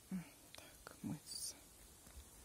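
A woman's voice speaking a few quiet, near-whispered words.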